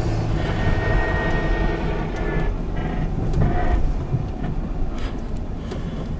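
Cabin sound of a 2006 Dodge Grand Caravan driving slowly at about 20 mph: a steady low engine and road rumble. A faint whine runs from about half a second in for about two seconds, and a few short clicks or knocks come later. The driver hears it as an odd noise from the wrecked van that he can't place.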